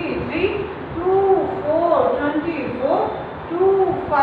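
Voices chanting number names in a drawn-out sing-song, as in a rote counting drill.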